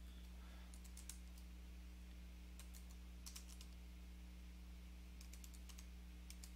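Faint computer keyboard typing: short bursts of keystrokes a second or two apart, over a low steady hum.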